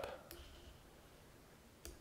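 Near silence: quiet room tone with a faint single click near the end.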